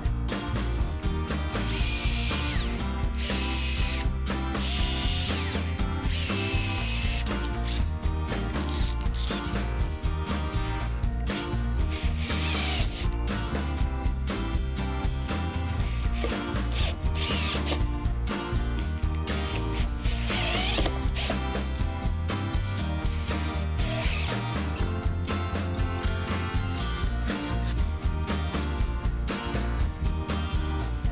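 Cordless drill driving screws through a steel leg-mounting bracket into wood, in several separate bursts of a few seconds each, the motor whine rising and falling in pitch. Background music plays throughout.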